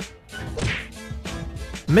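Title-card sound effects over music: sharp whip-like hits and a swishing whoosh about half a second in.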